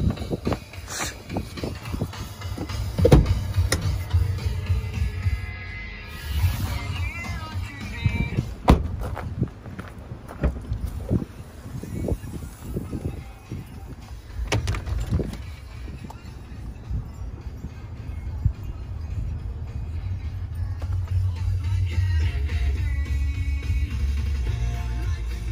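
Wind buffeting a phone microphone as a low rumble that grows stronger toward the end, with scattered knocks and clicks from handling.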